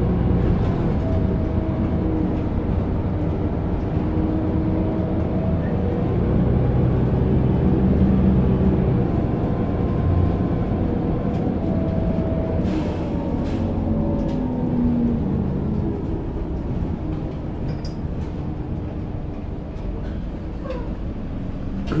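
Bus engine and running noise heard from inside the passenger cabin: a steady rumble with engine tones that rise and fall as the bus pulls through traffic. A short hiss comes about halfway through, and the rumble eases a little toward the end.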